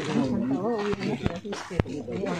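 People's voices talking, several at once and rising and falling in pitch, with a few sharp clicks in the second half.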